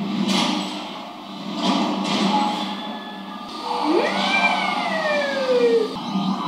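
Sound effects from a TV fantasy episode's battle scene: loud swells of noise in the first seconds, then from about four seconds in a pitched wail that shoots up sharply and then falls slowly, ending near the close.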